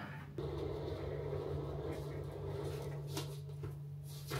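Steady low hum of room noise, with a faint click about three seconds in.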